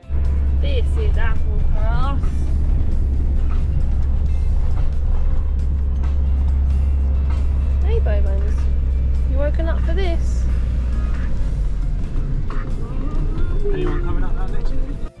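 Campervan engine and road noise heard from inside the cab while climbing a mountain road: a steady low drone that deepens a little near the end.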